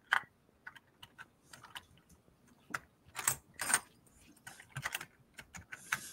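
Faint, scattered light clicks and clatter of small hard objects being handled, coming in short irregular runs, with two louder rattles a little past the middle.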